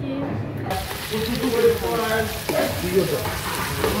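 Chicken breasts sizzling in a hot frying pan, a dense frying hiss that starts suddenly just under a second in.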